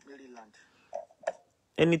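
A speaking voice trails off with a falling pitch, then a short pause holding two faint brief clicks about a second in, before speech resumes near the end.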